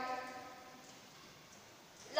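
Near silence: faint room tone, after a sustained pitched sound dies away in the first half second.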